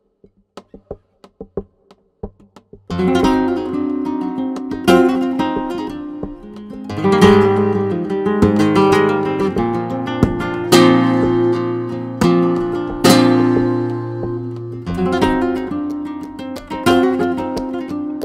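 A few light taps, then, about three seconds in, a solo flamenco guitar starts playing alegrías: picked melodic runs broken by sharp strummed chords.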